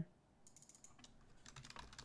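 Computer keyboard typing, faint: a quick run of keystrokes starting about half a second in.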